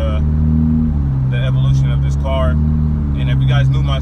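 Steady low hum of a 2018 Honda Civic Hatchback Sport's 1.5-litre turbocharged four-cylinder and CVT at a constant cruise, heard from inside the cabin with the road noise.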